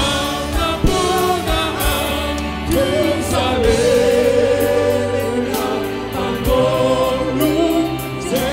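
Live church band playing a hymn: a voice sings long held notes over keyboards, with drums keeping the beat.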